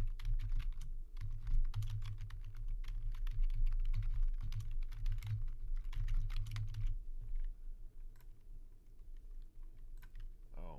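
Computer keyboard typing: a run of quick keystrokes for about seven seconds, thinning to a few scattered key clicks near the end.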